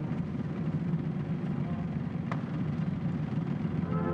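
Steady low outdoor rumble with no music, and one sharp click a little past the middle.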